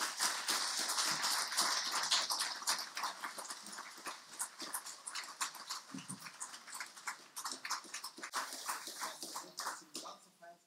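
Audience applauding, loudest in the first few seconds and thinning out toward the end.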